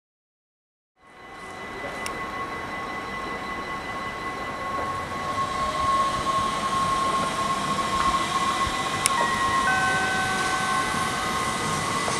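An NS Sprinter Lighttrain electric multiple unit passing, its wheels rumbling on the rails and its traction equipment giving a steady electric whine. The sound fades in after a second of silence, and more whining tones join about nine seconds in.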